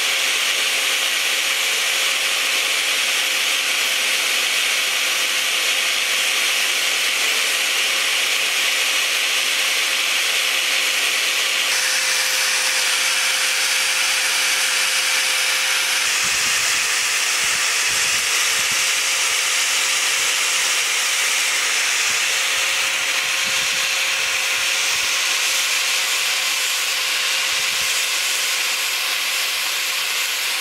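Electric angle grinder running steadily with an abrasive disc grinding the edge of an aluminium plate knife blank: a steady motor whine under a hissing grind. The tone of the grind shifts slightly at about 12 and 16 seconds.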